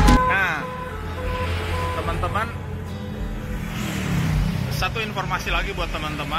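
Street traffic: cars and motorbikes running past with a steady low engine rumble, with brief snatches of voices. Background music cuts off right at the start.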